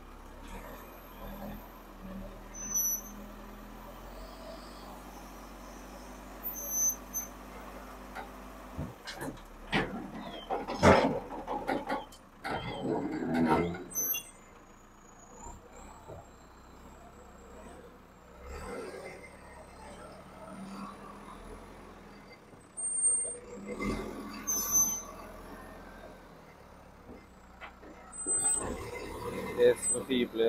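Backhoe loader's diesel engine running while its front bucket tips rock and dirt into a steel dump-truck bed, with loud clattering impacts about ten to fourteen seconds in and more knocks later.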